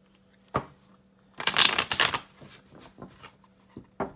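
A deck of tarot cards being shuffled by hand. There is a sharp tap about half a second in, then a dense flurry of cards slapping together for under a second near the middle, then a few lighter taps.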